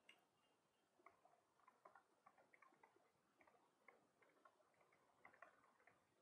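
Near silence with faint, irregular ticks of a stylus tapping on a tablet screen as a label is handwritten.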